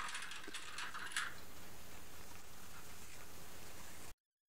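Plastic sewing clips clicking and rattling in their clear plastic box as clips are taken out, a cluster of sharp clicks in the first second or so, then only faint steady room hiss.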